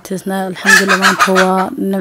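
A woman speaking in steady, continuous talk.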